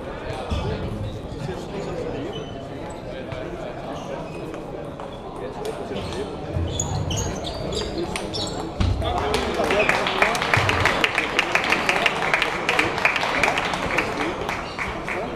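Table tennis rally: the celluloid ball clicks sharply off bats and table over the steady chatter of a busy sports hall. From about nine seconds in, a louder, dense run of rapid sharp clicks takes over.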